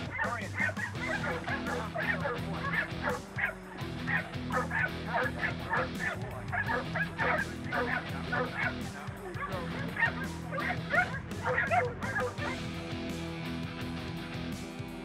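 A dog barking rapidly and over and over, several barks a second, stopping about twelve and a half seconds in, over steady background music.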